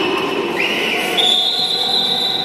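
A long, high, steady whistle blast that starts about half a second in and holds to the end, over the general din of a large indoor sports hall.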